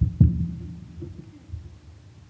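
Handheld microphone being picked up and handled through the PA: a loud, low thump about a quarter second in, then a couple of softer bumps, over a steady low hum.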